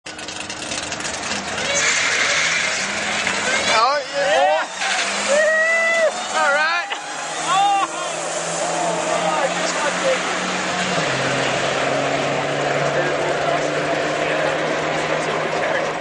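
Turbocharged Dodge drag cars running down the strip: a steady engine note that drops in pitch a little after 11 seconds in. Before that, about four to eight seconds in, people's voices are heard over the engines.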